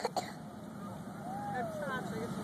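Indistinct background voices of bystanders, one rising and falling tone standing out near the end, over a steady low outdoor rumble.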